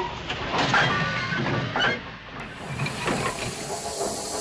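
Steam locomotive hissing as it lets off steam, steady with a few brief louder surges.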